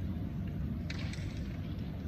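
Steady low rumble of a large hall's background noise, with a brief cluster of sharp clicks about a second in.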